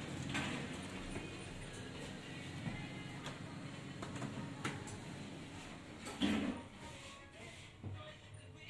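Elevator door-close button clicking as it is pressed about four and a half seconds in, then a louder thump with a brief low hum about six seconds in as the doors of the LG traction elevator shut. Background music and faint voices play throughout.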